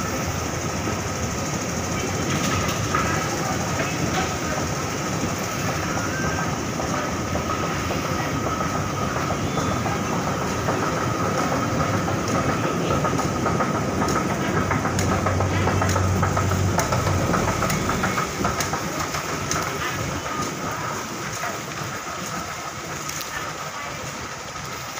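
Metro station escalator running: a steady mechanical rumble with a thin, steady whine over it.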